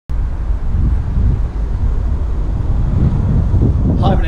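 Wind buffeting an outdoor microphone: a loud, irregular low rumble that starts abruptly and runs on without a clear engine note.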